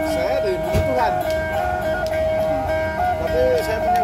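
Sundatang, the two-stringed plucked lutes of Sabah, playing a repeating melody that moves between a few close notes, with people talking in the background.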